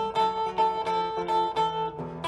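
Clean electric guitar fingerpicked in a slow down-home blues: a high note plucked over and over, about four times a second, above a lower bass line, as a fill between sung lines.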